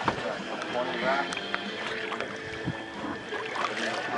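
Water splashing beside a boat's hull as a hooked fish is hauled up out of the sea, with a few sharp knocks and faint voices.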